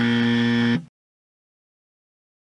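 A 'wrong answer' buzzer sound effect: one flat, steady buzz that lasts about a second and then cuts off.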